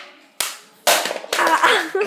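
Sharp impacts: a light knock about half a second in, then two loud, sudden smacks about a second in, followed by a girl's laugh near the end.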